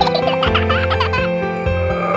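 Gentle instrumental nursery-rhyme music with a baby giggling over it for about the first second.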